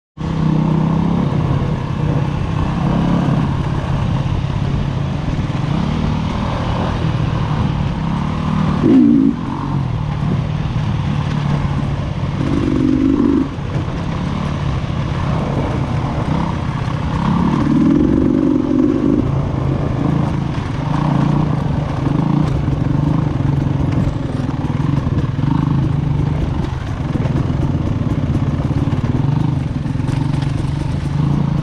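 2019 Beta 300RR Race Edition's two-stroke single-cylinder engine running under varying throttle while riding a dirt trail, with short revs about 9, 13 and 18 seconds in.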